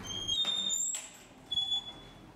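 A door being pushed open, squeaking with a thin, high tone that rises slightly for about a second, then a second, shorter squeak near the end.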